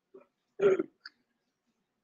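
A person's brief, loud throat noise close to the microphone about half a second in, with a fainter one just before it.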